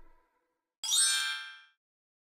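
The last note of the dance track dies away, then after a brief silence a bright chime sound effect rings out about a second in, opening with a quick upward sweep and fading within a second.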